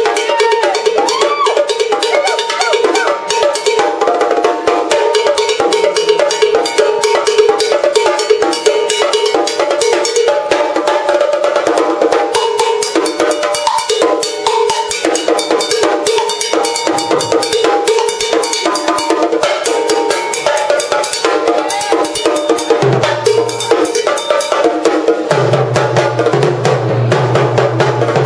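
Drum kit solo played live: a dense run of fast stick strokes on drums and cymbals, with no pause. A steady low tone joins underneath near the end.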